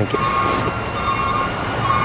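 A vehicle's reversing alarm beeping at one steady pitch, twice, about a second and a half apart, over a steady hum of traffic and outdoor noise.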